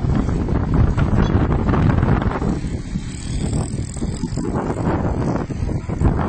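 Loud rumbling noise, mostly low, from traffic passing on the road, with wind buffeting the microphone.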